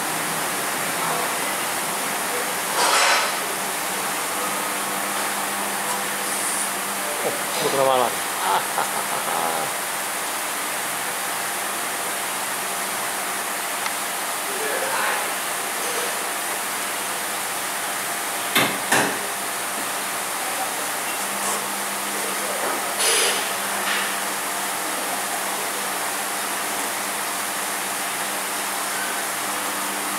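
Hunter SmartWeight wheel balancer spinning a tyre under its lowered hood: a steady hum with hiss for the first several seconds and again from about two-thirds of the way in. Between the spins come a pair of sharp knocks a little after the middle, plus a few short bursts of noise.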